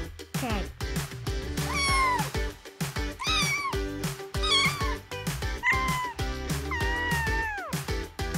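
A cat meowing about five times, high-pitched, with the last meow the longest and falling away near the end. Background music with a steady beat runs under it.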